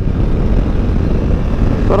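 BMW F 900 XR's parallel-twin engine and the wind rush of riding at speed, heard as a loud, steady, low rumble with no distinct engine note.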